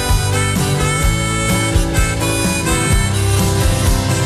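Live Americana rock band playing an instrumental break: a lead instrument plays held notes over a steady beat of drums and bass.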